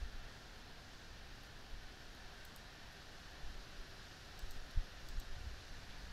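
A few faint computer mouse clicks over a steady low hiss, with one soft thump about three-quarters of the way through.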